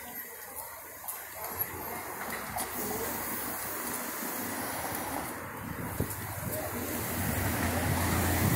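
City street ambience: a steady hiss of traffic and air, with a vehicle's low rumble growing louder toward the end as it approaches. A few short clicks stand out about one and a half, two and a half and six seconds in.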